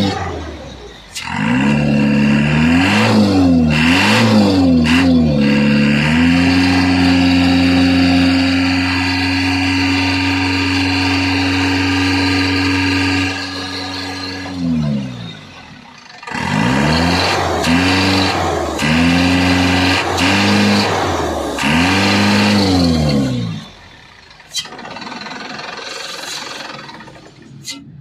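Isuzu NKR truck's four-cylinder diesel engine being revved by hand: four quick blips up and down, then held at raised revs for about seven seconds and let fall back, then four more blips before it settles back to a quieter run near the end. It is being run up to check for a misfire.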